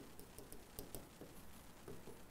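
Faint, irregular taps and scratches of a stylus writing on an interactive display screen, several small clicks a second as the letters are drawn.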